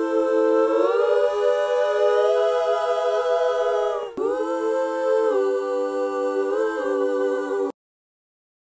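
Soloed, layered backing vocals holding sustained harmony notes with no instruments. The chord shifts about a second in, breaks off briefly near the middle, shifts twice more, and cuts off abruptly near the end as playback is stopped.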